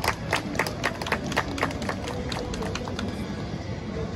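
A small audience clapping by hand, thinning out about two seconds in. Soft held musical notes then begin under steady street background noise.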